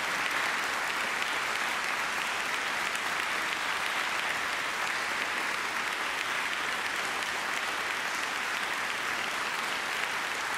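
Large audience applauding, a steady sustained clapping that does not let up.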